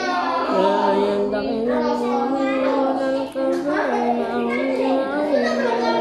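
A man reciting the Quran aloud in Arabic as a melodic chant, holding long notes that bend up and down, with one short pause for breath about three seconds in.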